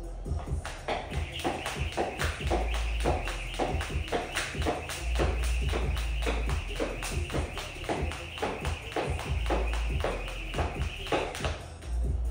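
Jump rope turning fast, its cable slapping the rubber gym floor in a steady rhythm of several slaps a second with a whir, starting about a second in and stopping a second before the end. Background music with a bass beat plays throughout.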